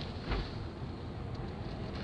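Steady low rumble of a Mercedes four-wheel drive heard from inside its cabin while driving on a snowy road, with one brief low bump shortly after the start.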